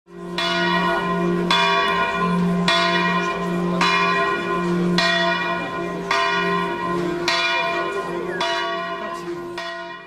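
A church bell ringing, struck about once a second, each strike ringing on into the next with a deep hum underneath, growing a little fainter near the end.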